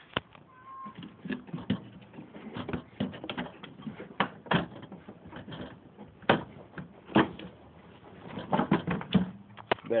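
Irregular plastic knocks, clicks and scrapes as a pickup's headlight assembly is worked loose by hand and pulled out of its mounting, with a cluster of knocks near the end as it comes free.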